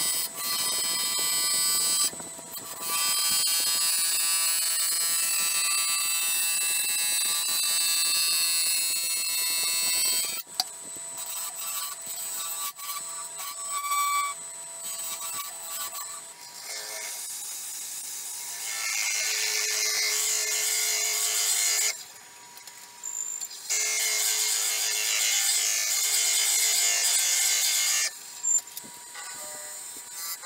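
Bowl gouge cutting a spinning blank of epoxy resin and cactus-juice-stabilized dog biscuits on a lathe, a loud high cutting noise in stretches of several seconds, with short breaks where the tool comes off the cut and a quieter stretch about a third of the way in. Thin steady tones run underneath.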